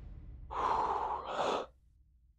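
A person sighing heavily: one breathy exhale of about a second, pushed out in two parts, over a low rumble that fades away.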